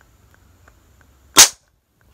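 A short length of pressurised Firetrace fire-detection tubing, heated in a lighter flame, bursts with a single sharp pop about one and a half seconds in. The tube ruptures at the hottest point, which is how the detector works.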